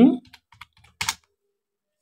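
Typing on a computer keyboard: a few light key clicks, then one sharper keystroke about a second in.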